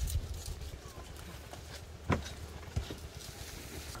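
Wind rumbling on the microphone, with scattered light knocks and rustles as coconut fronds and wooden poles are handled on a hut's roof frame; the sharpest knock comes about two seconds in.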